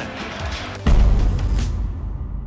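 Music from a broadcast transition sting, with a sudden deep boom hit a little under a second in whose bright hiss then fades away.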